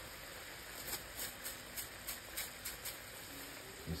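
Coconut-milk curry sauce simmering in a skillet: a faint steady hiss with small bubble pops scattered through it.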